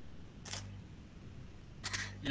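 Faint steady low electrical hum and hiss from a call microphone, with one brief soft click-like noise about half a second in. A man's voice begins just before the end.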